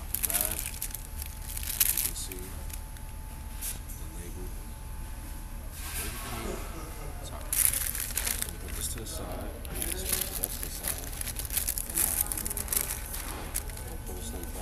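Paper fast-food bag and paper taco wrapper rustling and crinkling as they are handled and unwrapped, in several short bursts.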